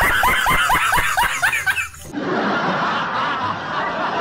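A snickering laugh: a quick run of about eight short 'heh' sounds, each falling in pitch, that breaks off about two seconds in. A steady even noise follows.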